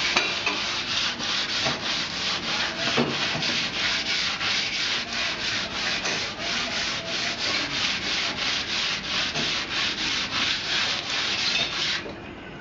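Rhythmic rubbing strokes of a hand tool scraping back and forth on a concrete surface, about three strokes a second, steady throughout.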